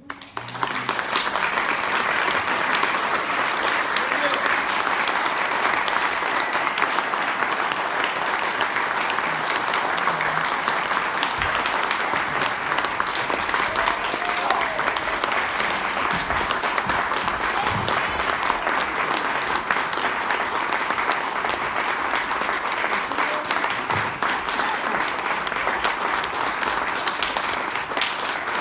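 Audience applauding: the clapping starts suddenly and stays loud and steady throughout.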